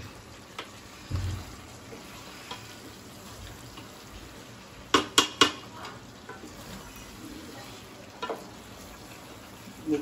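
Wooden spatula stirring a thick chicken curry in a stainless steel pot on a gas burner, keeping it from sticking to the bottom, over a low steady hiss. A few sharp knocks of the spatula against the pot, three in quick succession about five seconds in.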